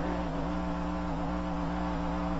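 Steady electrical mains hum from the recording's sound system: a low buzz of several steady tones.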